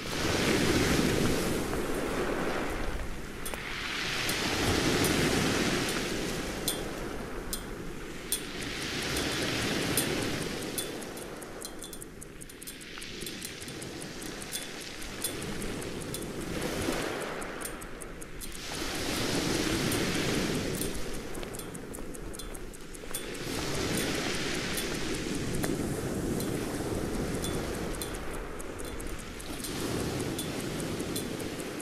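Waves washing against a rocky shore, the surf swelling and fading about every five seconds.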